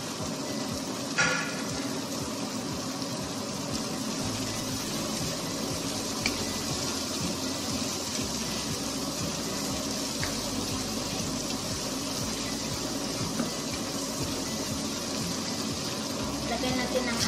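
Sliced bell peppers, onion and tomato sizzling steadily in a hot frying pan while being stirred with a wooden spatula. A short, ringing clink sounds about a second in.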